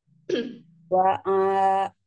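A throat clearing, then about a second in a woman starts reciting the Quran in a drawn-out chanted voice, holding a long steady note on the opening "wa".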